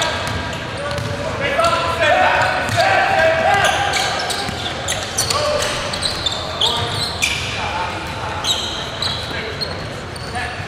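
Basketball being dribbled and bounced on a hardwood gym floor during a game, with players' voices calling out in a large hall and repeated short knocks throughout.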